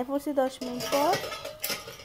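A steel pan used as a lid clinking against a black iron karahi as it is handled and lifted off, with a few sharp metallic clinks, over a voice in the background.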